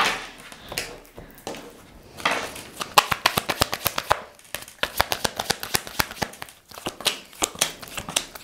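A deck of tarot cards shuffled by hand: soft sliding and rustling of cards, then a quick run of light snapping clicks as the cards are flicked through, densest in the second half.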